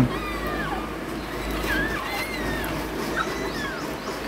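Bamboo rats squeaking: a string of thin, high calls that slide up and down in pitch, several over a few seconds.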